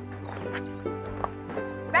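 Soft background score of held notes, the chord shifting about half a second in and again after a second.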